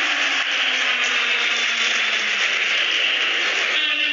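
Basketball arena crowd cheering: a dense, steady noise of many voices, with the arena's music coming back in near the end.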